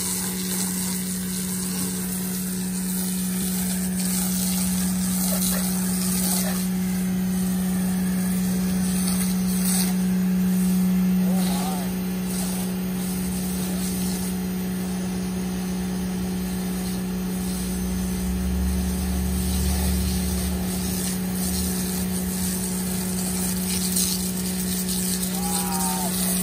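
Sun Joe electric pressure washer running steadily with a constant low hum, spraying foam through a foam cannon with a steady hiss of spray. The hum eases slightly just after 11 seconds in.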